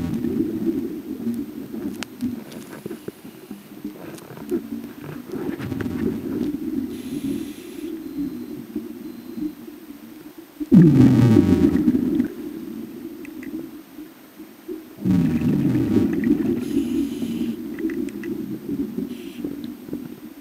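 Scuba regulator breathing heard underwater: exhaled bubbles rumble out in surges, the loudest about 11 and 15 seconds in, with quieter stretches between breaths.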